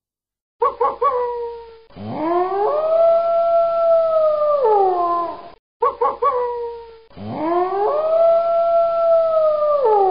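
Wolf howling: a few short yips, then one long howl that rises, holds steady and falls away. The same sequence sounds twice in identical form, about half a second in and again near six seconds.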